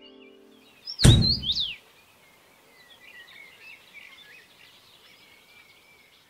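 A held music chord fades out, then about a second in a loud deep boom with a bright swoosh hits, like an outro sound effect. Faint birdsong chirps on after it.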